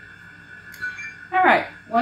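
A woman's voice, a brief sound of a syllable or two about halfway through, over a faint steady hum with a thin high tone.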